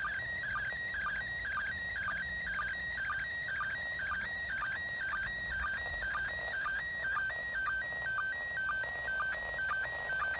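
Slow-scan TV signal from the International Space Station in PD120 mode, coming out of a Yaesu FT-70D handheld's speaker. It is a steady, evenly repeating run of tones that steps between two pitches, with a short lower beep about twice a second, over faint radio hiss.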